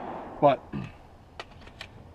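A few light, sharp clicks from handling a SIG MPX 9mm pistol and its magazine at the magwell. The echo of a gunshot fades out at the start.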